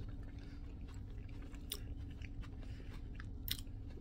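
A person chewing a mouthful of soft chickpea-and-vegetable patty: faint, irregular little clicks and smacks of the mouth over a low steady hum.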